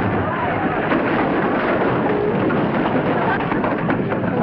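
Audience laughter, a long steady wave of many people laughing together.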